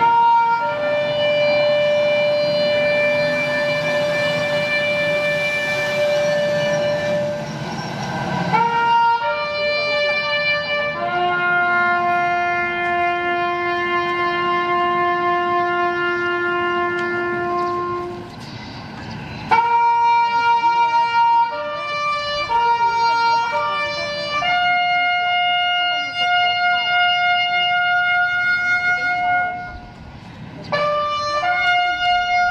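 A solo wind instrument playing a slow melody of very long held notes, each sustained for several seconds before moving to the next pitch, with a short break a little past the middle.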